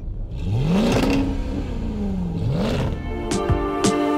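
A car engine starts and revs up, eases back down, and revs again. Music with sharp beats comes in near the end.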